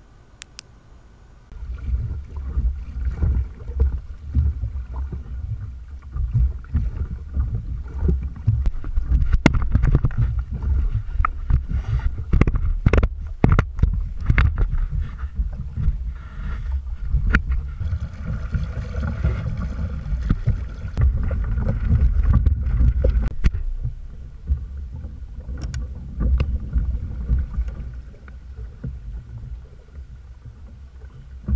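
A kayak under way on water, heard as a gusty, uneven rumble of wind and water noise on the camera's microphone, starting about a second and a half in. Scattered sharp knocks come through it, several of them close together around the middle.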